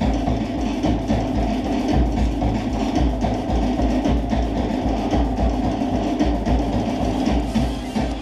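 Polynesian dance music with drums keeping a fast, steady beat.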